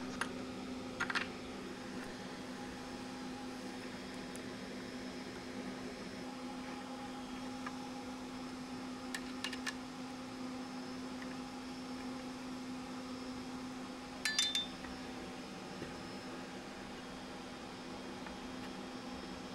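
Small metal parts of a 3D system motor mount and its aluminium profile being handled, giving a few light clicks and clinks: one about a second in, a couple around nine seconds, and a short cluster near the end. A steady low hum runs underneath.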